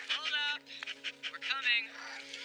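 A cartoon reindeer's wordless vocal noises: two short, pitched calls that slide in pitch, over steady held music notes.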